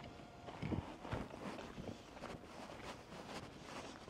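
Faint footsteps on a dirt and gravel track, about two steps a second.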